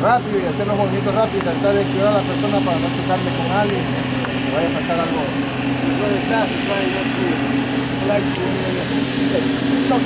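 Men's voices talking throughout, over a steady low mechanical hum.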